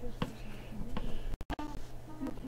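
Light clicks and taps of a clear plastic card holder being handled and set into an aluminium case, a few separate sharp ticks.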